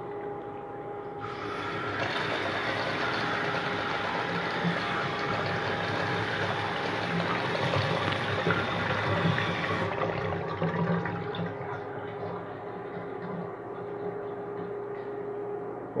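Miniature clay model toilet flushing under pump power: water rushing and swirling down the bowl, fullest from about two to ten seconds in and then easing, over a steady electric pump hum.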